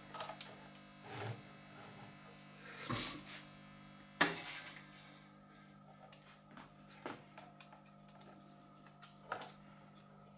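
Scattered light clicks and knocks as the opened case and internal parts of a soldering station are handled, the sharpest about four seconds in, over a steady low hum.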